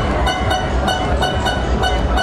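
Loud fairground ride music with a fast pulsing beat, about four pulses a second, and heavy bass, over the low rumble of a running Huss Break Dance ride.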